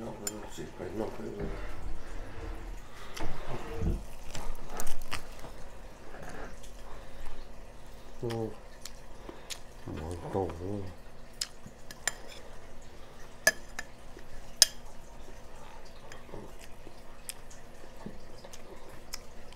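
Spoons clinking and scraping against bowls during a meal at a table, with a few sharp clinks in the second half. Brief low voices come in now and then.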